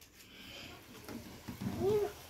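A short voice-like call that rises and falls in pitch near the end, over low background noise.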